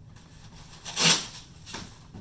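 A short rustling scrape from a goalie leg pad's material and strapping being handled, once about a second in, with a fainter one near the end.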